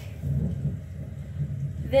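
Low, steady background rumble with a slight swell about half a second in; no other distinct sound.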